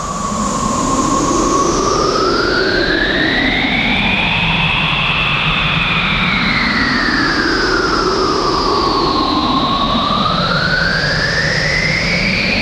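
Synthesized sweeping drone: a steady rushing noise with tones that glide slowly up and down together, rising and falling about every seven seconds.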